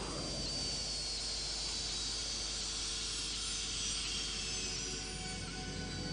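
Jet turbine engine spooling down after its fuel line is cut: a high whine slowly falling in pitch over a steady hiss.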